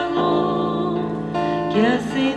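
Church hymn: acoustic guitar accompanying singing, with a rising sung phrase near the end.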